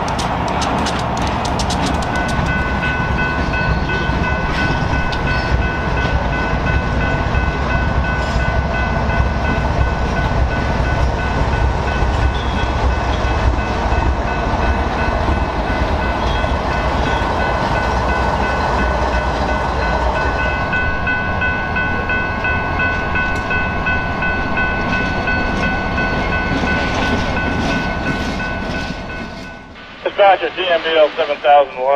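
A freight train rolling past on steel wheels, with a clatter of clicks over the rail joints at first and a steady rumble. A steady high-pitched whine runs through most of the passage. The low rumble eases off after about two-thirds of the way and the sound fades near the end.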